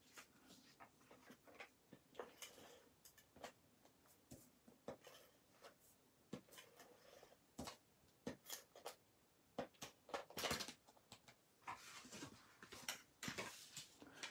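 Faint handling of cardstock and paper on a craft table: scattered light taps, clicks and rustles as pieces are positioned and pressed down, with one louder rustle about ten seconds in.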